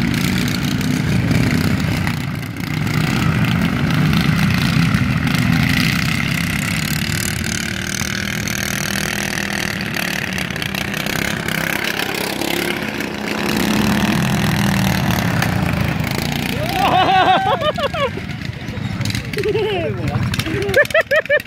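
Small engines of two racing ride-on lawn tractors running hard around a grass course, their sound swelling and dipping as they drive; a voice is heard near the end.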